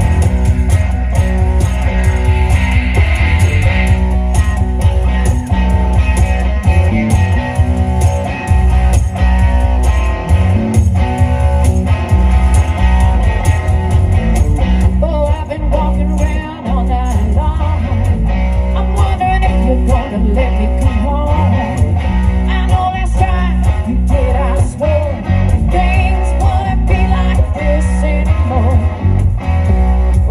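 A live blues-rock band playing through a PA: electric guitar and bass guitar under a steady bass line, with a woman singing, her voice more prominent over the second half.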